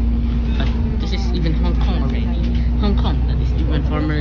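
Steady low engine and road rumble inside a moving bus, with a constant hum, and voices talking over it.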